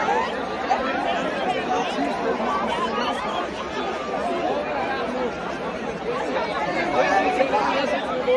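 Crowd chatter: many people talking at once around the microphone, a steady babble of overlapping voices.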